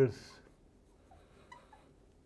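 Faint small squeaks and scratches of a pen writing on a board, a few at a time in the second half.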